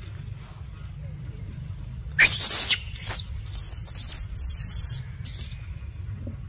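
Infant macaque screaming: a series of shrill, wavering squeals starting about two seconds in and lasting about three seconds.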